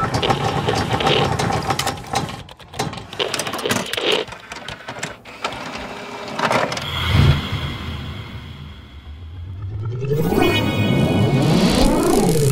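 Logo-reveal sound effects: a rush of whooshes and sharp hits, then rising and falling sweeps that build into a deep rumble near the end as the crest settles.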